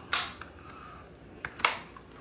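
Two sharp clicks about a second and a half apart, with a fainter tick just before the second, as fingers pry at the fold-out metal wall-plug prongs on the back of a small plastic power bank.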